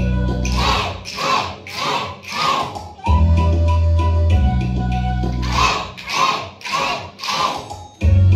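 Recorded music with a steady bass line that breaks off twice, each time for four loud unison shouts from a group of children, about two-thirds of a second apart.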